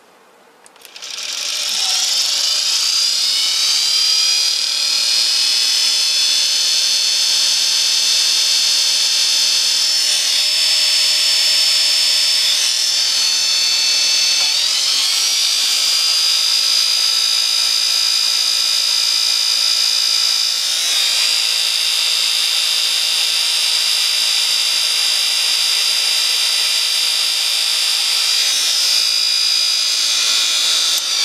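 Universal brushed motor starting about a second in, its whine rising in pitch as it spins up over a couple of seconds, then running steadily at high speed with a few brief shifts in pitch.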